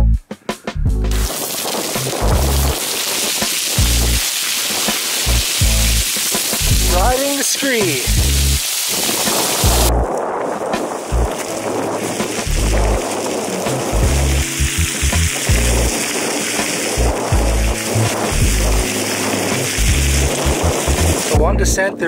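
Boots running and sliding down loose limestone scree: a steady gravelly rushing and crunching of shifting rock, with irregular heavy footfalls beneath; the sound changes character about halfway through.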